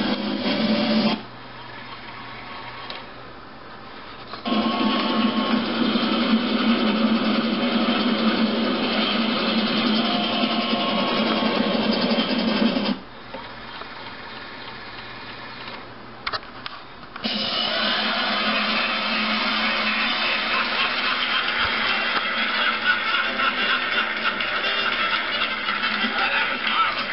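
Music soundtrack playing back from a CED videodisc through an RCA SelectaVision SFT100W player. The sound drops out twice, for about three and about four seconds, while the rapid-access search buttons are pressed, then the music comes back, with a couple of clicks just before the second return.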